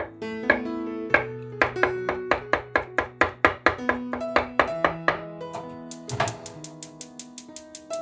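Light instrumental background music with plucked-string notes, over a kitchen knife chopping soft tofu on a wooden cutting board in steady strokes of about three a second that quicken near the end.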